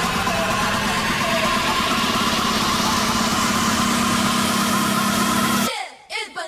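Live band playing a loud, dense, noisy passage with a low note that steps up in pitch twice, stopping abruptly near the end.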